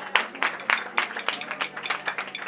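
Audience applauding: many quick, irregular handclaps.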